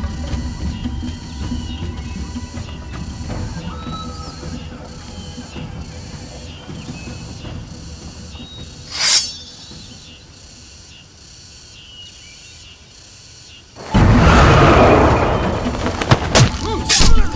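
Suspenseful film soundtrack: a low rumbling drone that slowly fades, one sharp swish about nine seconds in, then a sudden loud hit at about fourteen seconds, with a dense burst of fight sound effects after it.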